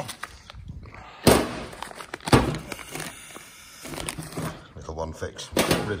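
Two loud knocks about a second apart near the start, with a man's low, indistinct speech.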